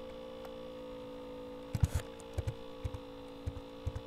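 Steady electrical mains hum with a mid-pitched whine in the recording. From about two seconds in, a handful of short, low clicks sound as the equation is edited on the computer.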